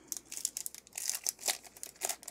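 The foil wrapper of a Topps baseball card pack crinkling as hands tear it open, in rapid, irregular crackles.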